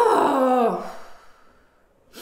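A woman's wordless voiced sound, rising then falling in pitch and ending about a second in.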